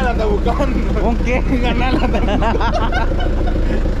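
Several people talking and laughing at once over the steady low rumble of street traffic and a nearby vehicle engine.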